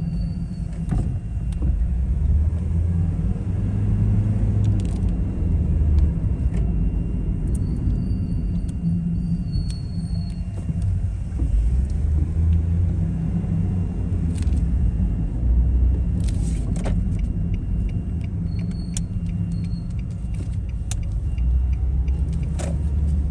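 Low, uneven rumble of motor vehicles running close by, with a few short clicks and knocks.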